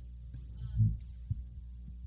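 Steady low electrical hum from the sound system, with a dull thump of a handheld microphone being handled a little under a second in and a short knock about half a second later.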